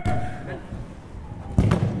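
A futsal ball being kicked, heard as a single sharp thud about one and a half seconds in, over background voices on the court.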